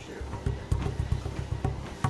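Motorized treadmill running with a low, steady rumble while a barefoot person walks on its belt, footsteps faintly heard over it.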